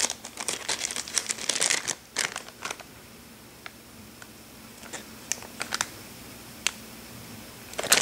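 Clear plastic bag crinkling as a wax tart inside it is handled. The crinkling is busy for the first couple of seconds, then thins to scattered small crackles and clicks.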